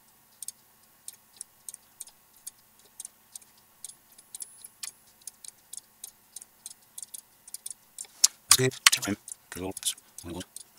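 Computer mouse clicking repeatedly, a few sharp clicks a second at uneven intervals, as lines are placed one after another in a CAD sketch. A man's voice speaks briefly near the end.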